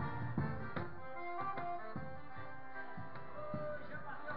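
A forró band playing live: zabumba drum strokes under a sustained accordion melody.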